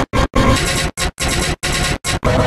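Harshly distorted, loud logo music, a noisy smear without clear notes, chopped into uneven stuttering bursts by sudden dropouts several times a second.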